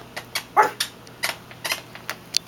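A small dog, a Yorkshire terrier, gives one short yip about half a second in, among several sharp light clicks.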